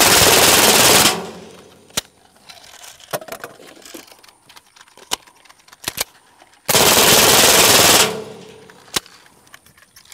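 Suppressed full-auto .22 LR AR-type rifle, a CMMG .22 upper with a titanium KGM Swarm suppressor, firing two long bursts of about a second and a half each: one at the start and one about seven seconds in. Scattered faint clicks fall between the bursts.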